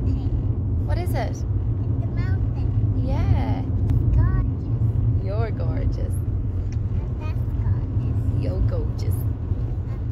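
Car cabin noise from a moving car: a steady low rumble of engine and tyres on the road. A small child's short, high voice sounds come now and then over it, without words.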